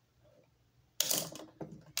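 A plastic Bakugan figure being handled. After a near-quiet first second comes a sudden clatter, then a run of small plastic clicks.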